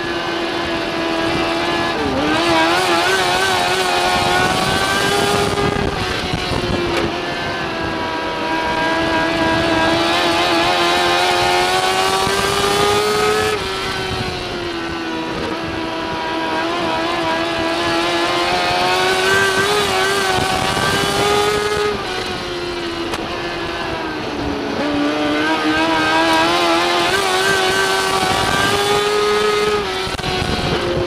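Mod Lite dirt-track race car's engine heard from inside the cockpit at racing speed. Its note climbs through long pulls and drops back sharply about every eight seconds, with a brief wavering pitch around two to four seconds in.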